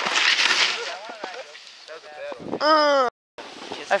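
A snowboard scraping through snow for about a second, then a short loud shout from a rider.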